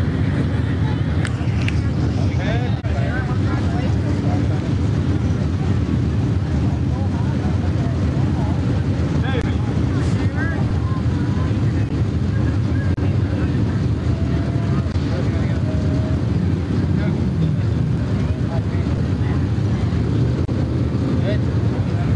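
A steady low rumble, with indistinct voices of people talking faintly over it.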